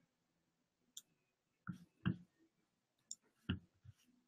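Faint, scattered clicks at a computer, about six in all, the loudest a little past two seconds and again at about three and a half seconds.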